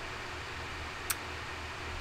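Steady background hiss with a low hum, and one short, sharp click about a second in.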